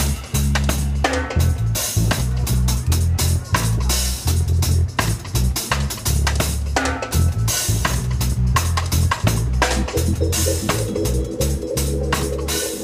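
Live reggae drum-and-bass breakdown: a drum kit playing bass drum, snare and rimshots over a moving electric bass line. About ten seconds in, held notes from another instrument join in.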